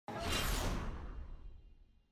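Broadcast graphic transition whoosh: a sudden swoosh with a deep rumble underneath, loudest at once and fading away over about a second and a half.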